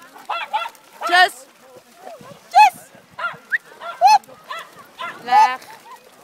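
Dogs barking in short, high-pitched yaps, about ten of them in quick, irregular succession.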